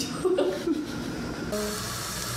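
A woman chuckling over light background music; about one and a half seconds in, a steady sizzle of a stuffed potato ball (papa rellena) frying in hot oil comes in.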